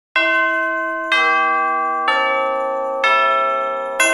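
Four bell strikes about a second apart, each ringing on and fading slowly as the next one sounds: a chiming intro music cue.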